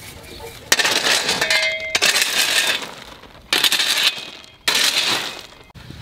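A steel digging tool driven three times into rocky soil beside a shrub's root ball, each stroke a sudden, gritty scrape with metallic clinks from stones against the blade.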